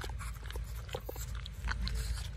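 A four-week-old Cane Corso puppy eating wet ground raw meat from a steel bowl: quick, irregular smacking and chewing clicks.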